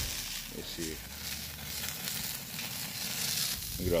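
Beef roast sizzling on the mesh grate over an open wood fire, with a steady hiss as fat drips into the flaring flames.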